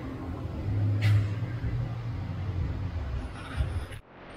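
A low steady mechanical rumble, swelling briefly about a second in, then cutting off suddenly at the end.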